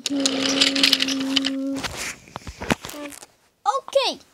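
A person holds a long, steady hummed note as a vocal train sound, over the rattle of wooden toy train cars rolling on wooden track. The note stops about two seconds in and is followed by a few light clicks and a short falling vocal sound near the end.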